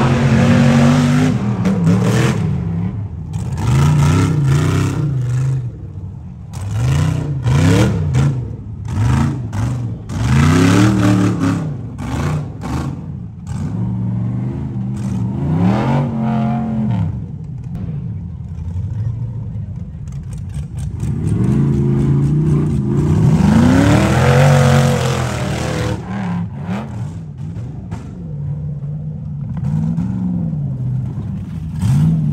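Rock bouncer buggy's engine revving hard in repeated bursts as it climbs a rocky hill, pitch rising and falling every second or two, with one longer, higher rev near the end.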